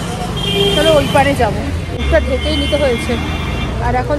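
Street traffic: steady low engine rumble from passing vehicles, heaviest about two seconds in, under a woman talking.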